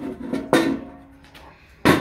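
Sheet-metal amplifier chassis being handled: a knock about a quarter of the way in rings on briefly with a tone, then a sharp clank near the end as it is picked up.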